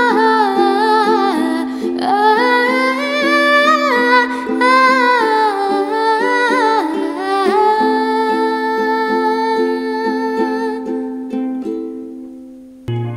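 A ukulele strummed through an Am–F–Am–G chord loop under a woman's wordless singing. About halfway through she holds one long note, and it fades out with the strumming near the end as the song closes.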